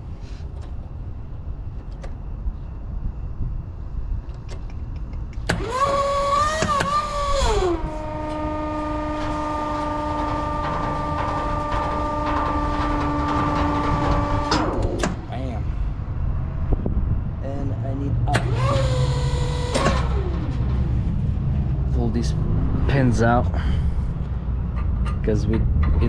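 Car-hauler trailer's hydraulic system whining as the control-valve levers are worked to lower a deck: a wavering whine that settles about eight seconds in to a lower, steady tone, holds for about seven seconds and cuts off, then a second, shorter whine. A steady low rumble runs underneath.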